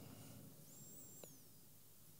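Near silence: room tone, with a faint high squeak about a second in.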